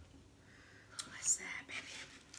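Breathy hissing drawn through the mouth, starting about a second in: a person cooling a mouth burning from spicy hot wings.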